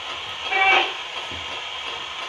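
Ghost box (spirit box) sweeping through radio stations: a steady hiss of static, broken about half a second in by a brief chopped radio fragment.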